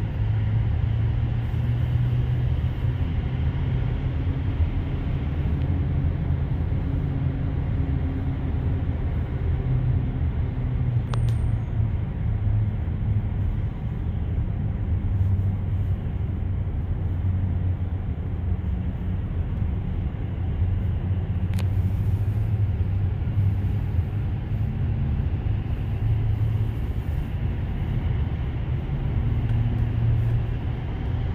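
Steady low road rumble of a Tesla electric car driving through a road tunnel, heard inside the cabin with no engine note. Two faint clicks sound, about eleven and twenty-one seconds in.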